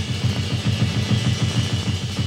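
Drum kit played in a fast, dense roll on the toms and bass drum, low strokes coming at about ten a second under a cymbal wash, as in a drum solo.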